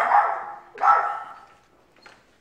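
Dachshunds barking at a stranger arriving at the house: two barks, one at the start and one just under a second in.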